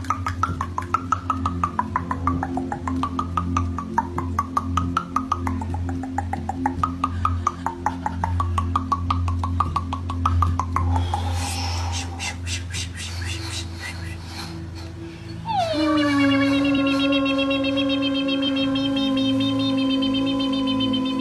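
A person making rapid clicks with the mouth, with a wavering high tone rising and falling over them, for about eleven seconds. At about fifteen seconds a long, held wailing vocal tone begins, dipping in pitch at its start, over a steady low musical drone.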